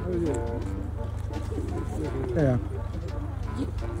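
Indistinct voices of people talking close by, over a steady low hum.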